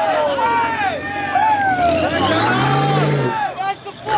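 Car doing a burnout: tyres squealing in long wavering tones, with the engine revving up and holding high for about a second and a half past the halfway point. A crowd shouts around it.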